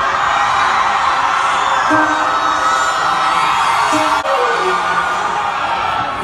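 Crowd cheering and whooping over a live Punjabi band, whose held notes give way to a few scattered short notes.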